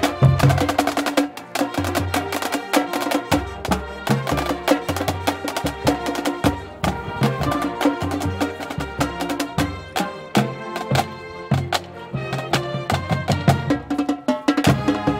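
High-school marching band playing a tune, with a drumline of snare drums and bass drums driving a steady beat under sustained melody notes.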